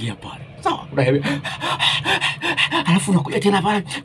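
A man talking animatedly, with a short, quieter breathy stretch about half a second in.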